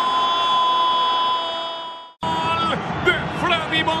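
A football commentator's long held goal cry, one steady sustained note over crowd noise, fading away about two seconds in. After a sudden cut, a man's voice goes on talking over the crowd.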